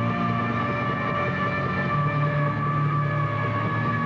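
Heavy metal band playing live, with distorted electric guitars holding long sustained chords over a steady high ringing tone; the low note shifts about halfway through.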